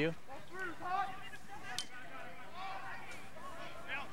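Distant shouts and calls of lacrosse players on the field over a steady outdoor background, with one sharp click near the middle.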